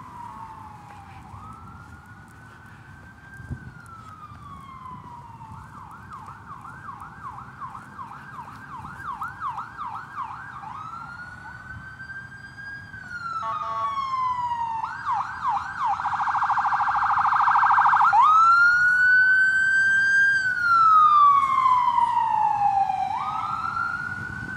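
Emergency-vehicle siren wailing in slow rising and falling sweeps, switching to a fast yelp in the middle and back, and growing louder in the second half.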